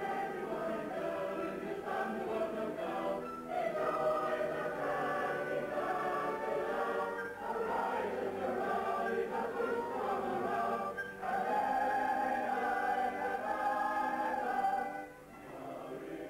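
A choir singing long held notes in parts, the chord changing every second or two; the singing falls away briefly near the end.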